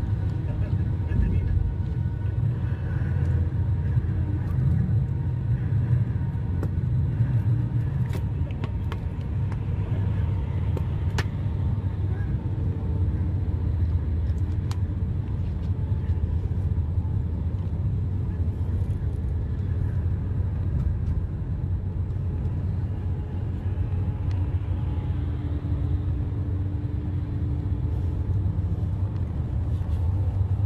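Steady low rumble of road and engine noise inside a vehicle's cabin while it cruises at highway speed, with a few faint ticks about a third of the way in.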